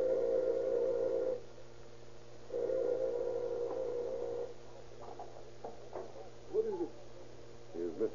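Doorbell sound effect in an old radio drama, ringing twice: two long steady rings, the second starting about a second after the first stops.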